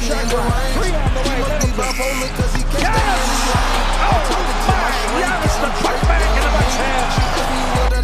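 Hip-hop beat with heavy bass hits that slide down in pitch, roughly two a second, over basketball game audio. An arena crowd cheers louder from about three seconds in.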